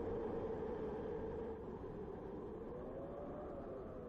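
A faint, steady electronic drone from a public service ad's soundtrack, its pitch wavering slightly.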